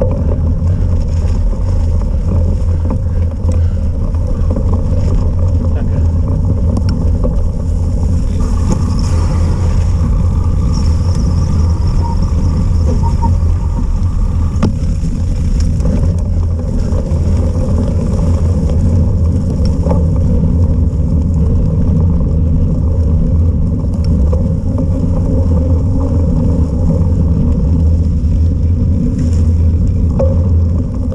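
Steady loud wind noise on a cyclocross bike's onboard camera microphone, over the low rumble of knobby tyres rolling on mud and wet tarmac at race pace. A faint high whine comes in for several seconds near the middle.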